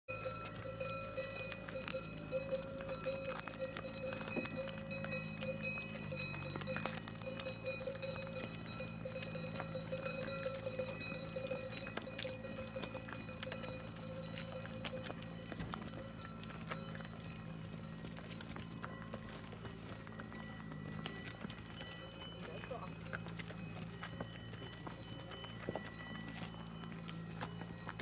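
Cows' hooves clopping on an asphalt road as a herd walks past, many irregular clicks. A steady low drone runs underneath, dipping in pitch briefly twice.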